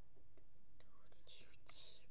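A child whispering faintly, with breathy hisses about a second and a half in and a few soft ticks.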